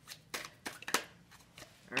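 A tarot deck being shuffled by hand: several short, sharp snaps of cards at irregular intervals.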